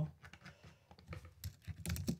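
Typing on a computer keyboard: a quick run of key clicks, louder and denser near the end.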